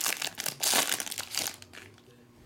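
Foil trading-card pack wrapper crinkled and torn open by hand, in a run of rustling bursts that die away shortly before the end.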